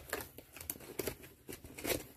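Cardboard box being handled: a scatter of light taps, scrapes and rustles.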